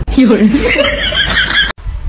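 A short snippet of a voice with chuckling laughter, cut off abruptly near the end.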